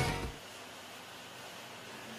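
Intro rock music dying away within the first half second, then quiet room tone: a steady, even hiss from a small room.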